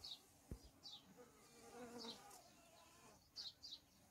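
Faint buzzing of honeybees flying around an open hive, with a soft tick about half a second in and a few brief, faint high chirps.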